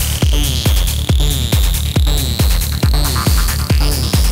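Psytrance DJ mix: a steady four-on-the-floor kick drum, a little over two beats a second, with a rolling bassline between the kicks, under a high synth sweep that slowly rises in pitch, building up.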